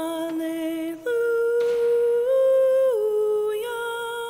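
A solo singing voice holding long, slow notes, the melody stepping up and down a few times, with a brief break for breath about a second in.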